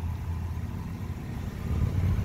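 The 2006 Mitsubishi Raider's 4.7-litre V8 idling steadily.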